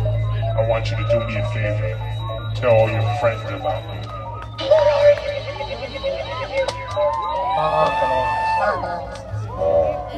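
A live electronic-rock band holds a low, steady drone from the stage after the drums drop out, with audience voices talking and calling over it. From about six and a half seconds in, several high tones slide up and down in arcs over the drone.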